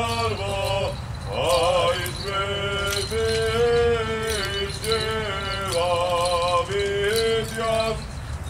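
An Armenian Apostolic priest chanting an unaccompanied memorial hymn at a graveside service: one male voice singing long held notes that slide between pitches, with a short break about a second in.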